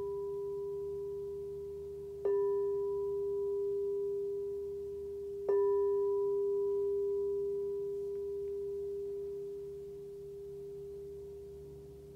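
A singing bowl struck twice, about two and then five and a half seconds in, with the ring of an earlier strike already sounding at the start. Each strike gives a clear steady tone that rings on and slowly fades, and the last one is still dying away at the end. A bell like this marks the close of a guided meditation.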